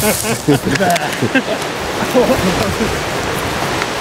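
Steady rush of river rapids, with indistinct voices talking over it for the first couple of seconds.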